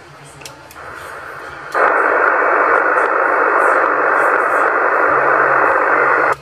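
Hiss from a Yaesu FT-450 transceiver's speaker receiving lower sideband on the 27 MHz CB band. It is faint at first, then cuts in loud and steady about two seconds in.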